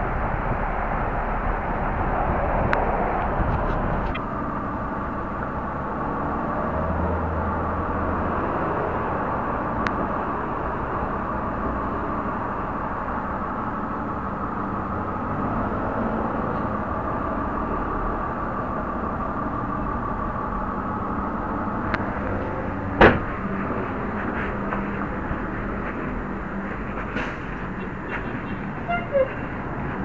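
Steady city street traffic noise picked up by a small USB spy camera's built-in microphone, with one sharp knock about 23 seconds in.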